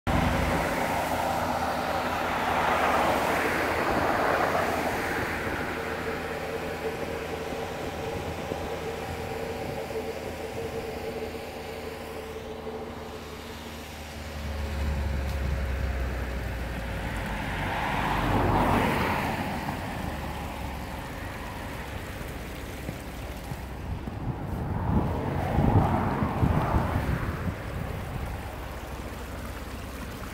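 A steady engine hum runs under wind on the microphone. Swells of noise from passing road traffic rise and fade over a couple of seconds, several times.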